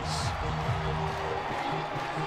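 Baseball stadium crowd cheering a walk-off win, with music playing over it.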